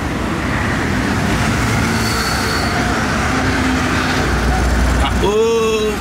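City street traffic noise: a steady hiss of road traffic, with a heavier low rumble about four seconds in. A man gives a short 'uh' near the end.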